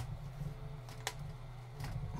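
Steady hum of a hot-air rework station blowing on the board. Sharp clicks from fingers handling the tuner module and its connector come once at the start and again about a second in.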